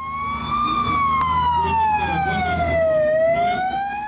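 Emergency vehicle siren wailing: its pitch rises briefly, falls slowly for about two seconds, then starts rising again near the end, over a low rumble.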